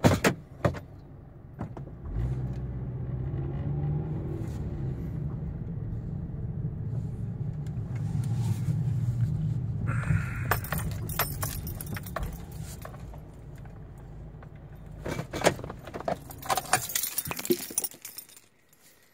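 A Kia car's engine heard from inside the cabin: it starts up about two seconds in and runs steadily. Near the end it shuts off amid a burst of keys jangling and clicking.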